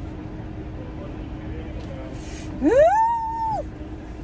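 A woman's voice gives one high "whoo": it slides quickly upward, holds a high note for about half a second, then drops away, a little past halfway through. Under it runs the steady low hum of the car idling.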